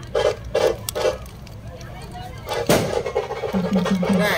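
Chatter of a street crowd, cut by three quick sharp knocks in the first second and a single louder bang about three-quarters of the way through. A short low pulsing tone follows near the end.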